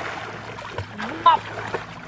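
Water splashing, with a person's voice calling out briefly about a second in.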